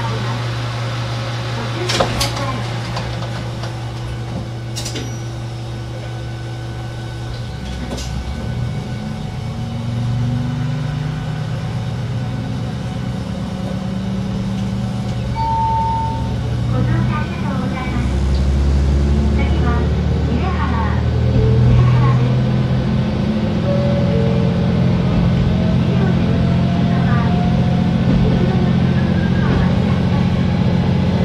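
KiHa 120 diesel railcar engine idling steadily, then revving up after about eight seconds as the railcar pulls away and accelerates, its pitch rising in steps and growing louder. A short beep sounds near the middle, and a voice is heard briefly after it.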